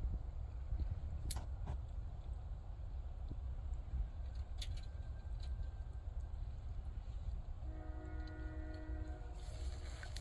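Low steady rumble with a few sharp clicks of the wire-mesh colony trap being handled. Near the end a horn-like tone is held for about a second and a half.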